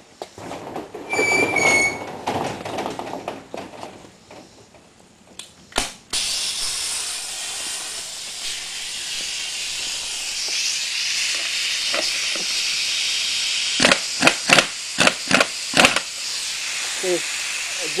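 Air impact wrench hissing steadily with its trigger feathered, then a quick series of about seven short impact bursts near the end as it lightly hammers the fine-threaded nut on the spring-loaded GY6 driven clutch to break it loose.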